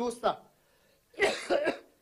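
A man's brief spoken syllable, then about a second in a single cough into a close microphone.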